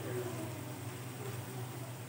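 Potato snacks deep-frying in hot oil in a pan, a steady sizzle.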